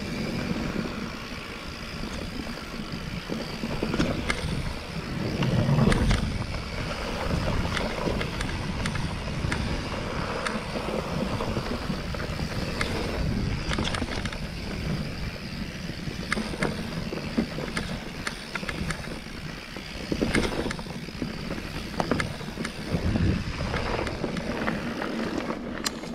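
Mountain bike rolling downhill on a dirt singletrack: continuous rumble of tyres and air on the microphone, with frequent rattles and knocks from the bike jolting over roots and bumps. It is loudest about six seconds in.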